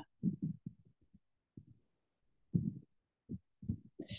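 A string of faint, muffled low thumps coming at irregular intervals over a call microphone, with nothing in the higher pitches.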